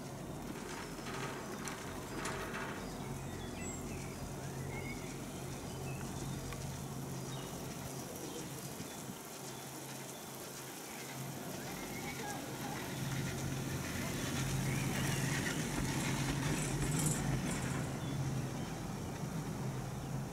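Outdoor ambience aboard an open chairlift: a low, steady hum that swells in the second half, with faint bird chirps and distant voices.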